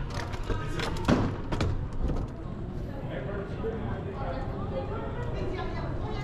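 Indoor public-space ambience: background voices and music in a large hall, with a quick cluster of three sharp knocks about a second in.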